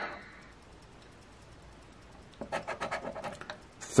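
Scratch-off lottery ticket being scraped with a handheld scratcher: a quick run of rapid scraping strokes about two and a half seconds in, lasting about a second.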